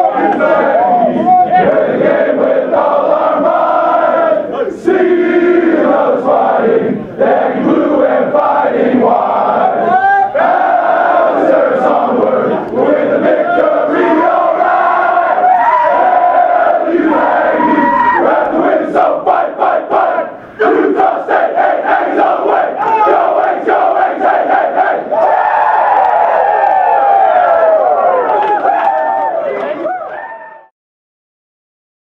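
A football team of many men singing their team song together, loud and shouted, with arms raised.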